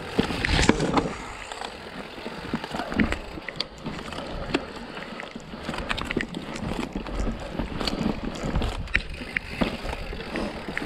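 Mountain bike rolling down rocky, rooty singletrack: tyres on dirt and rock, with scattered knocks and rattles from the bike as it hits roots and rocks, the loudest cluster about half a second in.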